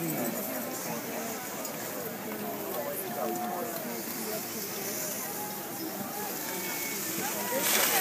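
Indistinct voices of people talking, steady throughout with no clear words. A louder rush of noise comes in just before the end.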